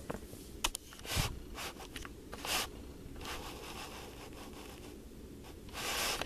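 Rustling and scraping from a CD package and its paper inserts being handled while stickers are pulled out of it, with a few sharp clicks in the first second or so and a louder rub near the end.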